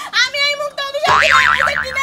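A comic cartoon "boing" sound effect: a springy tone whose pitch wobbles up and down about five times a second, starting halfway through and lasting about a second.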